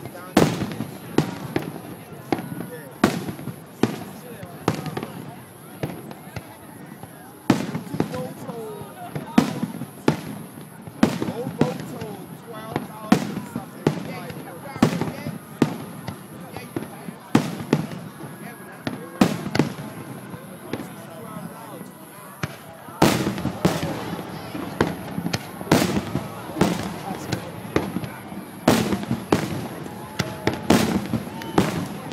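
Aerial fireworks shells bursting overhead in a rapid, irregular series of sharp bangs, about one or two a second and coming faster in the last third, over a background of crowd voices.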